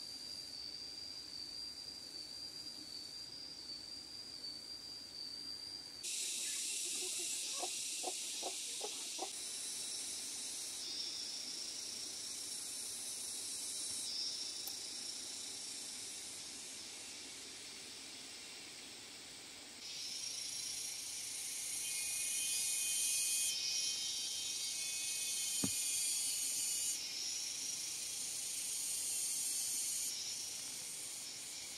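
Insects singing: a steady high whine at first, then loud, shrill buzzing choruses that switch on and off abruptly, a new one starting about six seconds in and another about twenty seconds in.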